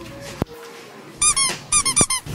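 A single click, then about a second in two quick runs of short high-pitched squeaks, about eight a second, each one arching up and back down in pitch.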